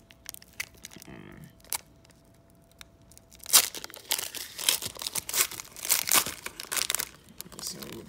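Foil wrapper of a trading card pack being torn open by hand: a few soft rustles, then a loud run of crinkling and tearing from about three and a half seconds in that lasts a few seconds.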